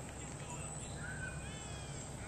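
Birds calling and chirping in quick repeated arched notes, over a steady low outdoor rumble.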